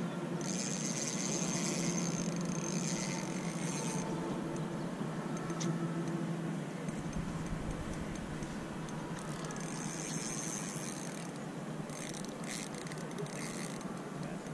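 Spinning fishing reel being cranked in three spells, a mechanical whirr over steady wind and water noise.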